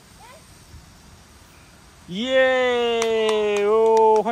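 A person's long, drawn-out cheering call, loud and held on one steady pitch for about two seconds, starting about halfway in after a faint stretch, with a few sharp clicks over it.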